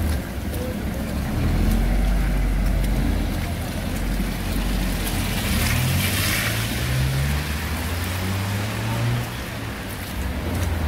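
Road traffic on a wet, slushy street: vehicle engines running close by, one rising in pitch about five seconds in as it speeds up. Around six seconds in, a passing vehicle's tyres hiss on the wet road.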